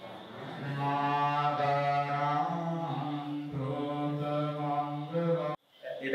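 Buddhist monks' pirith (Pali paritta) chanting over a microphone, in long drawn-out notes held on a few steady pitches. It breaks off suddenly near the end.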